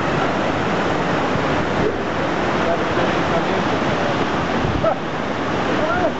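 Water of the Marmore waterfall rushing steadily below the falls: a loud, even, unbroken hiss of falling and churning water.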